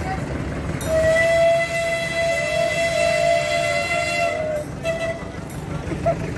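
A narrow-gauge locomotive's whistle sounds one long blast of about three and a half seconds, then a short toot about a second later.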